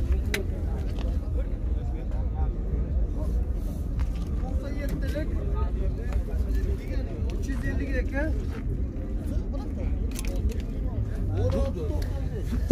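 Several people talking in the background, none close to the microphone, over a steady low rumble, with a few faint clicks.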